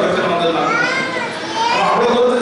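Mostly speech: a man speaking into a microphone, with children's voices heard in the hall around the middle.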